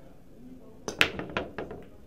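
10-ball break shot on a pool table: a light click of the cue on the cue ball, then a sharp crack as the cue ball hits the rack about a second in, followed by several quick clacks as the balls scatter.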